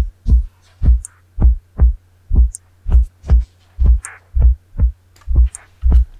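Kick drum pattern isolated from a full mix by real-time stem separation: deep thumps about twice a second in an uneven, syncopated pattern, with a few faint hi-hat ticks and a steady low hum of leftover bass underneath.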